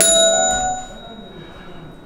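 A small bell struck once to buzz in on a quiz question. It gives a clear ding of several ringing tones that fades away over about a second.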